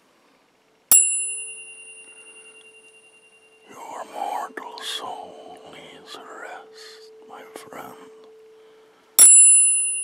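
A tuning fork is struck about a second in, with a sharp click and then a steady ringing tone with high metallic overtones that fades slowly over several seconds. It is struck again near the end.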